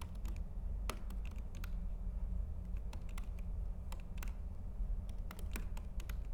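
Typing on a computer keyboard: irregular key clicks coming in quick runs, over a steady low hum.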